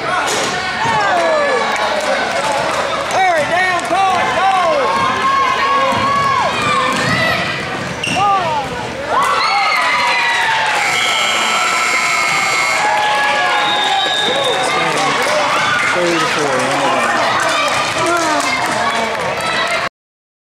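Youth basketball game in a gym: the ball bouncing, sneakers squeaking on the hardwood and voices from the players and crowd. Just past halfway the scoreboard's end-of-game horn sounds one steady blare for about two seconds, marking the final buzzer.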